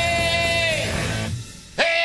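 Rock song: a long held note that dies away about two-thirds of the way through, a brief near-break, then the band comes back in with a sharp loud hit near the end.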